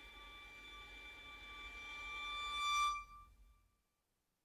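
Music: a track's final held chord on bowed strings, swelling, then stopping about three seconds in and fading to silence.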